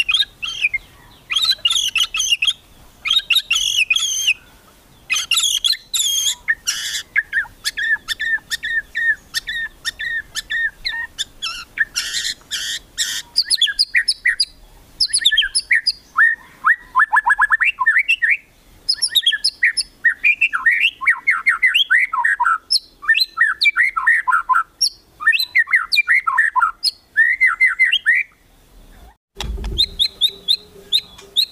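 Caged white-rumped shama (murai batu) singing its 'kretekan' song, the kind used to provoke rival birds into singing. It opens with harsh, crackling bursts, then from about halfway runs into fast series of downward-sweeping whistled notes, with a brief break near the end.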